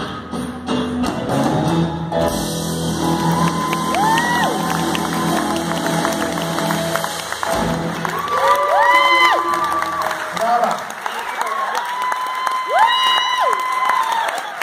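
A live rock-and-roll band with electric guitars, keyboard and drums plays the last bars of a song. About halfway through, the band stops and the audience applauds, with shouts and shrill whistles.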